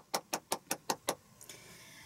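One person clapping hands quickly and evenly, about five claps a second, stopping a little over a second in.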